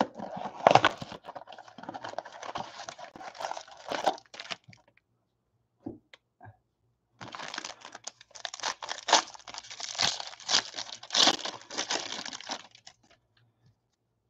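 Crinkly foil wrapping being torn open and crumpled by hand: a trading-card pack opened in two stretches of crackling with a short pause between, the second stretch with sharper tearing snaps.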